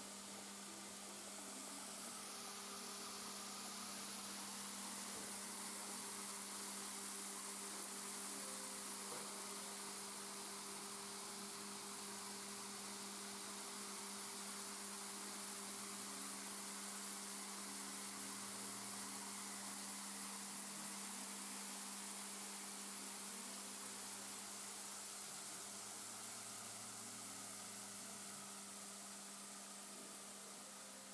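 Steady, fairly faint hiss of water falling as a curtain of droplets from a Tsunami water screen, with a steady low hum underneath.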